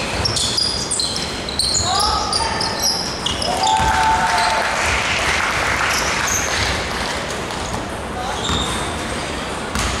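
Basketball game sounds in a large sports hall: sneakers squeaking in short chirps on the hardwood court, the ball bouncing, and players' voices calling out.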